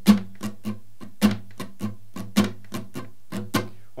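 Acoustic guitar with a capo strummed in a steady rhythm, a chord ringing under quick strokes with a louder accented strum about every second.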